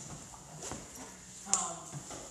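A pause in a woman's speech, with a single light tap or click partway through, then her hesitant "um" near the end.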